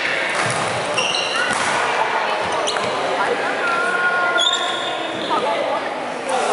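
Badminton play in a large hall: sneakers giving short high squeaks on the wooden court floor and rackets striking the shuttlecock with sharp clicks, over a background of voices echoing in the hall.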